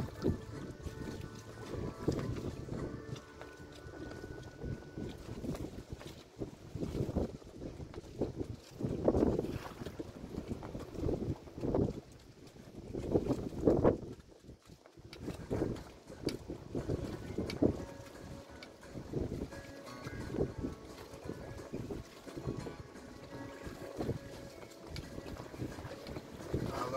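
Gusty wind buffeting the microphone by open water, in uneven surges that rise and fall every second or two. Faint music with held tones is audible in the first few seconds.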